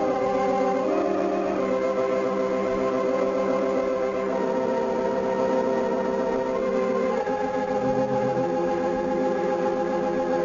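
Organ music: slow, held chords that change every few seconds, with no drums.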